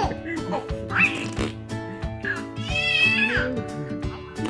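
A baby squealing and giggling over background music: a short rising squeal about a second in, then a longer, wavering high squeal about three seconds in.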